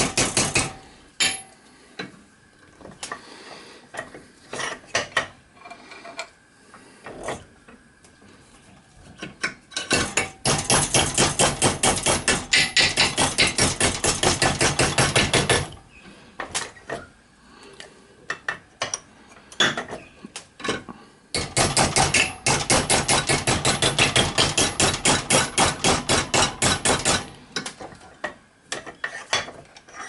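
Hammer tapping a disc of 1.2 mm copper sheet round a former held in a vise, working a flange onto a boiler end plate; the copper is still a bit hard. Scattered taps, then a fast, steady run of taps from about ten seconds in for five or six seconds, and another run a little past twenty seconds.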